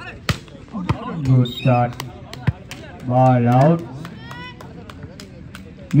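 Volleyball rally: sharp smacks of the ball being hit, the hardest about a third of a second in, with further hits and thuds over the next few seconds and shouts from players and onlookers in between.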